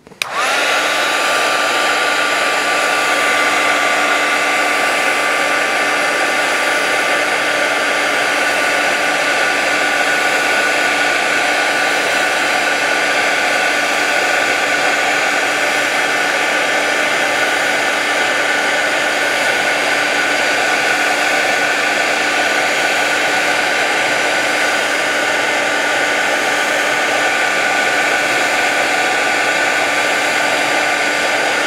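Handheld craft heat tool (embossing heat gun) switched on right at the start and running steadily, drying wet watercolour paint on card. It gives a loud, even rush of blown air with a steady motor hum.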